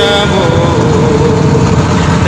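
A boat's engine running with a steady low rumble. A man's voice holds a wavering note that fades out about a second in.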